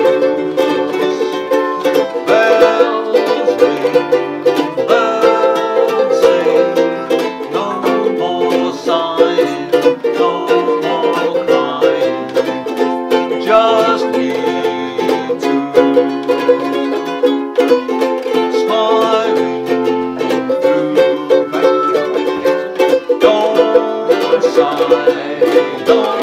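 Two ukuleles strummed together in a lively, steady rhythm, with a man singing along.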